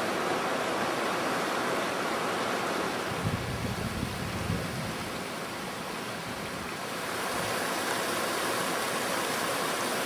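Mountain stream rushing over rocks, a steady wash of water noise. A brief low rumble comes in about three seconds in.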